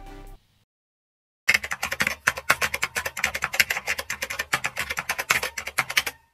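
Fast typing on a computer keyboard: a quick, irregular run of key clicks that starts about a second and a half in and runs to the end. Background music cuts off in the first moment.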